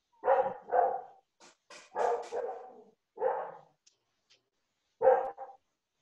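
A dog barking, a series of short barks with pauses between them.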